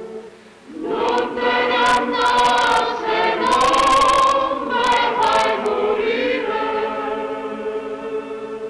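A choir singing held notes in a film soundtrack: after a brief dip it swells in loudly about a second in.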